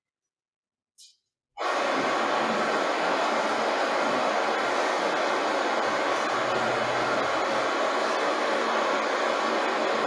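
A faint click, then about a second and a half in a steady, even rushing hiss starts suddenly and holds at one level, like wind or running water.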